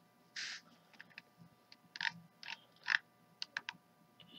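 Faint, irregular clicks and taps of a computer keyboard and mouse, about a dozen of them, with one short soft rustle about half a second in.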